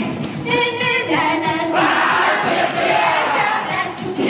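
A Japanese girl idol group singing a J-pop song live with its music, with the fans shouting along; the crowd noise thickens about two seconds in.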